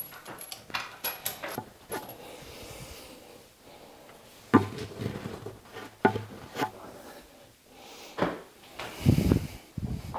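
Hands fitting a new bathroom tap to a vanity: scattered clicks and knocks, a few louder knocks about halfway through and a heavier thump near the end.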